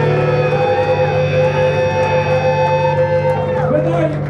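Live metallic hardcore band letting a distorted electric guitar chord ring out with the drums stopped, a wavering tone bending up and down in pitch above the held chord. The ringing stops just before the end.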